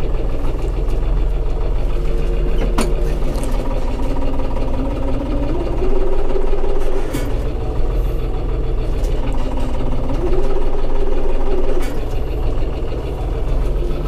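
Tümosan 6065 tractor's diesel engine running, heard from inside the cab while it reverses a trailer, the revs rising and falling twice, about five and ten seconds in. A single sharp click about three seconds in.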